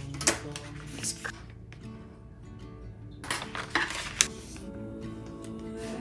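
Background music, over which a few sharp clicks and light clatters sound as a plastic ruler and paper pattern pieces are handled on a tabletop, the loudest click a little past the middle.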